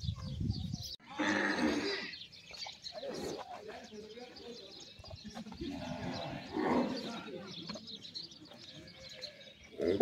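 Zebu cows in a crowded pen lowing several times, the loudest call about a second in, with people's voices in the background.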